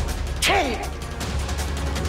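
A short spoken exclamation of disgust, "chhi!", about half a second in, with a hissy start and a falling pitch. A low, steady background score drones underneath.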